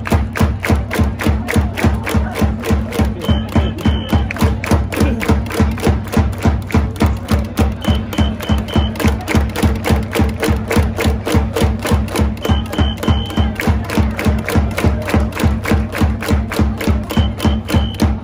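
Japanese baseball cheering section (ouendan) performing a Chunichi Dragons chance chant: a fast, steady drum beat at about four strokes a second under a crowd chanting along.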